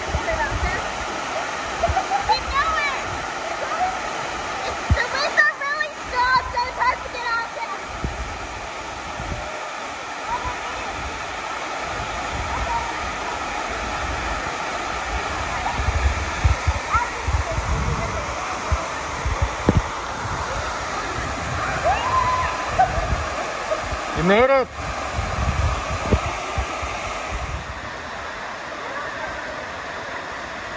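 Waterfall pouring into a plunge pool: a steady rush of falling water. Scattered short calls sound over it, and a single short rising cry comes a few seconds before the end.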